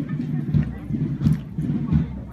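People talking close by in short, broken bursts, with low-pitched voices.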